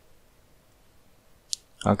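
Near-silent room tone broken by a single sharp click about one and a half seconds in, then speech begins near the end.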